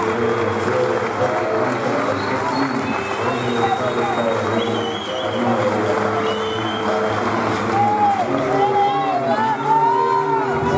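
Entrance music playing loudly over a noisy crowd, with many voices and people calling out around the ring.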